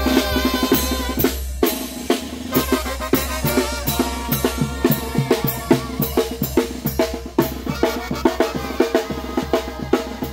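A Mexican village brass band (banda) playing, with snare and bass drum beating a quick steady rhythm under held horn notes. The music breaks off for an instant about a second and a half in, then the drums carry on.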